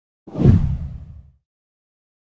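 A single whoosh sound effect for an animated screen transition, swelling up fast with a deep low end and fading away over about a second.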